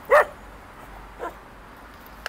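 A dog barks once, loud and short, then gives a much quieter short bark about a second later.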